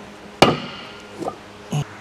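A 5 kg weight plate set down on a wooden table: one loud, sharp knock with a brief ring about half a second in, then a couple of faint knocks.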